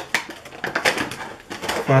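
Clear plastic packaging crinkling and crackling in the hands, an irregular run of small crackles.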